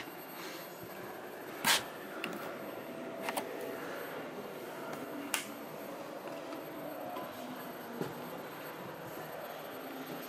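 Steady background hubbub of a busy exhibition hall, with a few sharp clicks or knocks, the loudest about two seconds in.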